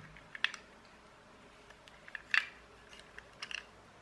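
A few light clicks and ticks of metal tweezers against a toy car's metal chassis and axle while hair is picked out from around the wheel. The clearest click comes a little past the middle, with a few smaller ticks near the end.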